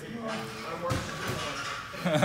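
Faint background voices during a lull in the talk, with a single sharp knock about a second in.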